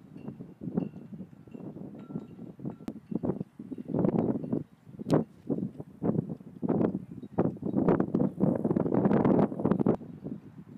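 Wind buffeting the microphone in gusts that build toward the end, with one sharp thump about five seconds in from a football being kicked off the tee.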